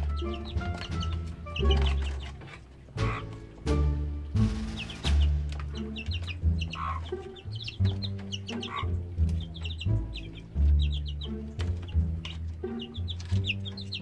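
Background music with a repeating low bass line, over chickens clucking.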